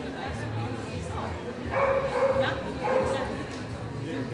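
A dog barking: a short run of barks about two seconds in, then one more about a second later.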